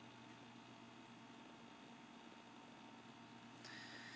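Near silence: faint steady hiss and low hum of the recording's background.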